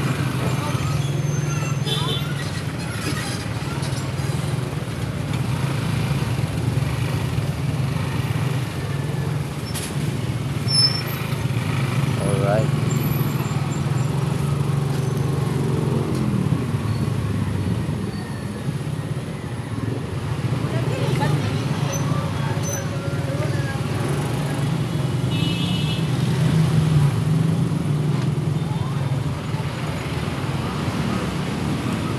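Motorcycle engine running steadily at low speed in slow, congested street traffic, with the hum of the surrounding vehicles; the engine note drops once about halfway through.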